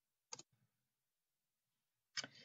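A single short click about a third of a second in, a computer mouse click advancing the lecture slide; otherwise near silence.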